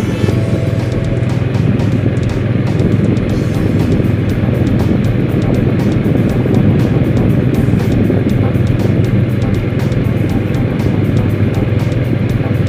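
Motorcycle riding at a steady pace: an even, low engine hum and road noise, with music playing over it.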